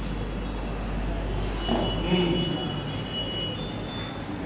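Steady background hiss of a classroom recording with a low electrical hum that stops about two and a half seconds in, and faint murmuring voices about halfway.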